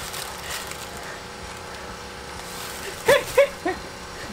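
Faint low background noise, then a short laugh of about three quick 'ha's near the end.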